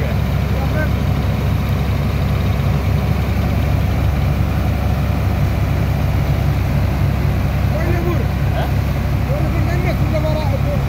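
Diesel engine driving a sand dredger's pump, running at a steady low drone, with sand-and-water slurry gushing from a hose.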